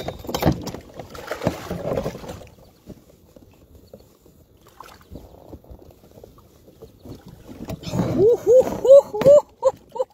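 Rustling and knocking as gear is handled inside a kayak for the first two seconds or so, then a quiet stretch. Near the end, a man's voice gives a quick run of five or six short, rising-and-falling exclamations.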